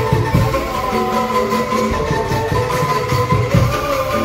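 Angklung ensemble playing a melody on racks of bamboo angklung, the shaken bamboo giving held pitched notes over a repeated low bass beat.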